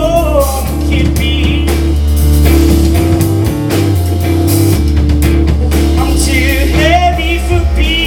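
Rock band playing live: electric guitar and two drum kits over a deep, held bass line. A wavering lead line comes in at the very start and again near the end.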